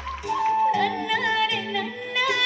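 A singer performing a Hindi film song live with amplified band accompaniment, the sung melody bending and wavering in pitch; the sound changes abruptly about a third of a second in, as if at an edit.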